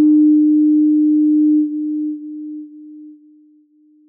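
A single pure electronic tone, held steady at one pitch, that fades away in steps about every half second, like repeating echoes, as the sound of a closing channel logo ident.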